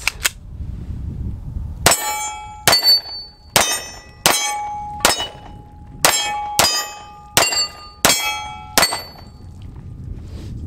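Walther PPQ SC pistol fired ten times at a steady pace, a shot roughly every second, with steel targets ringing at different pitches after several of the hits.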